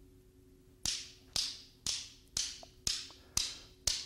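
Steel balls of a Newton's cradle clacking together as a single ball swings in and knocks the end ball out, over and over. Sharp metallic clicks about twice a second, each with a brief ring, starting just under a second in.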